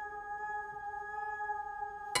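Ringing of a bell-like struck musical tone: several steady pitches held, barely fading, with no new strike.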